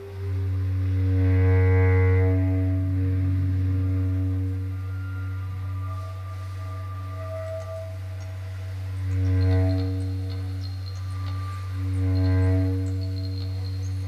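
A loud, steady, didgeridoo-like low drone that starts abruptly and holds for the whole stretch, with higher overtones swelling and fading over it three times, in free-improvised music.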